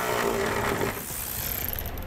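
Cordless ratchet with a 10 mm socket running a nut off a bolt: a motor whine that lasts about a second, followed by quieter handling noise.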